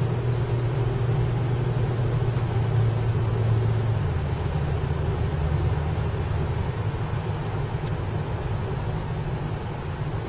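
Car driving along a road, heard from inside the cabin: a steady low engine and road rumble, its drone dropping a little in pitch about four seconds in.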